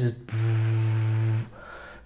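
A man imitating the buzz of a spotlight's cooling fan with his voice: one steady, even-pitched buzz lasting about a second. The fan's noise is what spoiled his recordings' sound.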